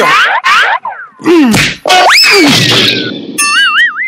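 Cartoon sound effects for a wrestler being thrown: a fast rising whistle-like swoop that slowly slides back down, then a wobbling, springy boing near the end.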